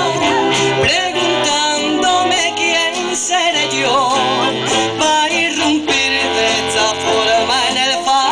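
Live band music: a man singing with wide vibrato, backed by clarinet and Spanish guitars.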